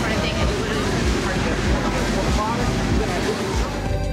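Voices over music with a steady beat.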